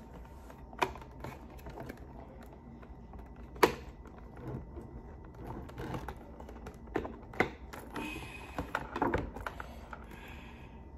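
Hard plastic clicks and taps as a tinted football visor is worked onto a helmet's facemask. A few sharp clicks are spread out, with the loudest about three and a half seconds in, and a busier run of clicking and rattling near the end.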